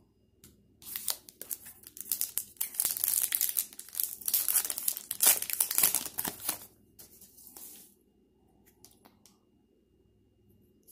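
A Topps Gypsy Queen trading-card pack wrapper being torn open by hand and crinkling, a dense run of crackling that starts about a second in and lasts about six seconds, followed by a few faint crinkles.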